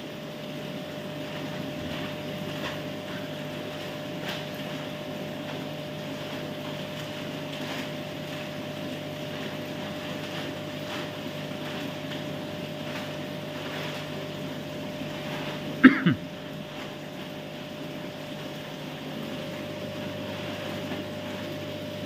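Steady machine hum with a low rush, from the room's aquarium pumps and air conditioning, with faint light ticks of handling. About sixteen seconds in there is one brief loud sound with a falling pitch.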